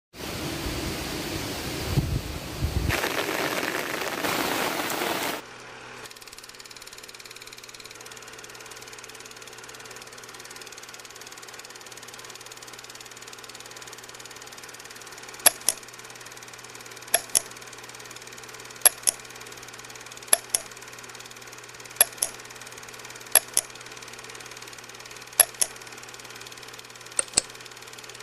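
Strong wind buffeting the microphone for about five seconds, cutting off abruptly. Then a steady low hum and hiss, with sharp double clicks about every one and a half seconds from about halfway in.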